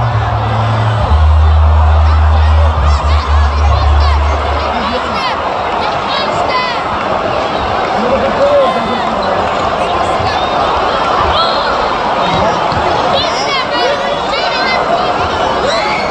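Crowd at a live basketball game: a din of chatter and shouts, with scattered short high squeals and whoops. Music with a heavy bass beat plays under it for the first few seconds, then cuts out.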